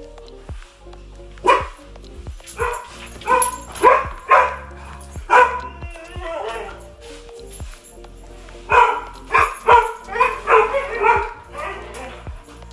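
A dog barking in two bouts of short, loud barks, about six in the first half and about seven near the end, over steady background music.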